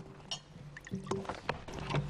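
Meeting-room noise during a lull: scattered light knocks and clicks of people handling papers, cups and chairs, over a faint background murmur.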